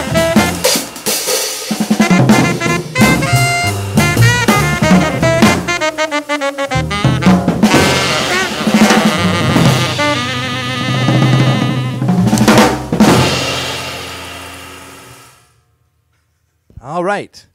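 Jazz trio of saxophone, upright bass and drum kit playing, with the drums to the fore. The tune ends with a final cluster of hits about three-quarters of the way through that rings on and fades out to silence.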